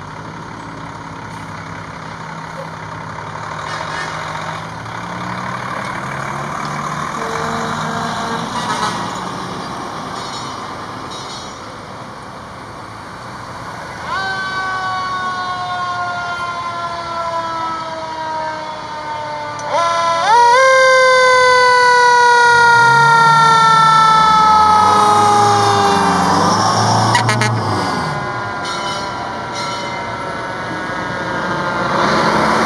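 Fire truck engines rumbling as the trucks pull out, then a fire truck siren sounded twice, about 14 seconds in and again about 20 seconds in. Each time it climbs quickly in pitch, then slowly falls away. The second one is louder and is heard over a truck engine revving.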